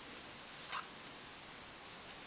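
Faint steady hiss, with one short soft click about a third of the way in from hands working a crochet hook through yarn.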